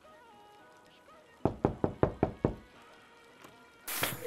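Six quick, sharp knocks on a door in about a second, over faint background music.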